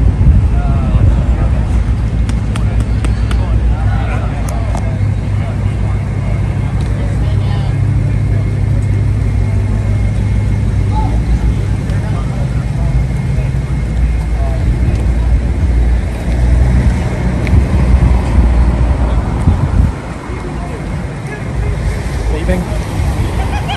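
Low, steady rumble of road traffic and vehicles beside a roadway, with indistinct voices in the background; the rumble eases near the end.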